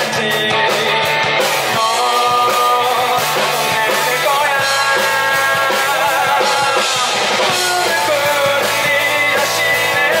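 A live rock band playing through the stage PA: electric guitar and bass guitar under a male lead vocal, the music steady and loud.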